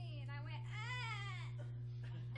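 A woman's voice in a high, drawn-out crying wail that rises and then falls in pitch, over a steady low electrical hum.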